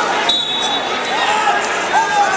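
Crowd voices echoing in a large arena, with a steady high whistle tone held for over a second, starting a moment in.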